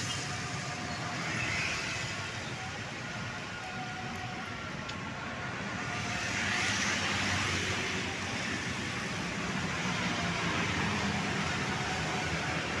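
Busy road traffic with motorcycles and scooters passing close by: engines running and tyre noise in a steady wash. It swells briefly as a group of motorbikes goes past about halfway through.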